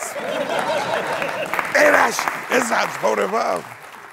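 Studio audience applauding after a punchline, with a man's voice speaking over it in the second half.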